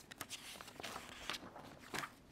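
Paper pages being leafed through in a tabbed document folder: a run of soft, irregular rustles and flicks, the last one the loudest.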